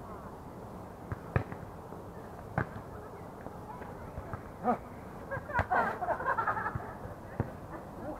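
A volleyball being struck by players' hands and forearms during a rally: several sharp slaps, a second or so apart. Players' voices call out in the middle.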